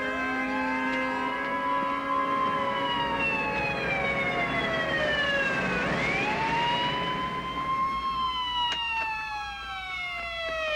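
Police car siren wailing, its pitch rising and falling slowly twice.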